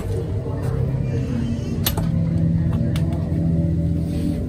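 A steady low droning hum with a few sharp cracks cutting through it, the clearest about two seconds in and a couple more around three seconds.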